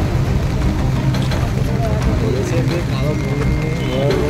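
Men talking in a group outdoors over a steady low rumble, with one voice clearest from about a third of the way in.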